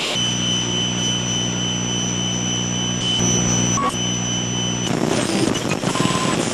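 Electronic drone from an experimental ambient track: a steady low buzzing hum with a thin, high, steady whistle tone above it. The texture shifts briefly a little past three seconds, and the sound turns rougher and noisier near the end.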